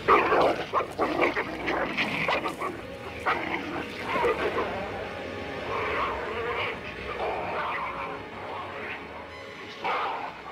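Irregular animal-like cries and yelps, with no band music behind them.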